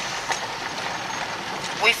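Steady, even hiss of road and cabin noise inside a moving car, with a woman's voice starting right at the end.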